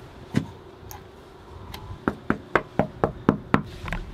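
Knocking on a front door: one knock, then a quick run of about seven evenly spaced knocks, roughly four a second, starting about two seconds in.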